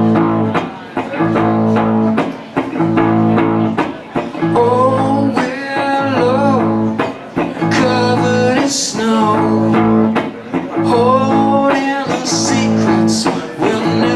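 Live song on electric guitar and voice: chords strummed in a steady rhythm with short regular breaks, and a man singing phrases over them from about four seconds in.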